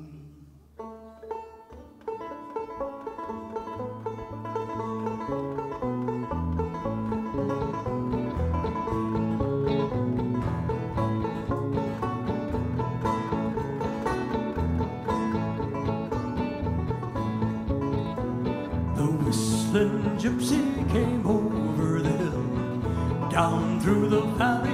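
Banjo and acoustic guitar playing an instrumental bluegrass intro. It comes in about two seconds in, after the last held note of the previous song fades, and grows a little fuller near the end.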